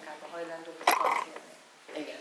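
A woman talking in a room, with a brief sharp sound about a second in that is the loudest moment.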